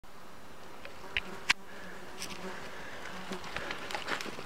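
A flying insect buzzing close by in a steady low drone, with two sharp clicks about a second in.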